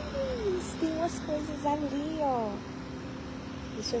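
A woman's voice making drawn-out wordless sounds that slide down in pitch, stopping about two and a half seconds in, over a steady low hum.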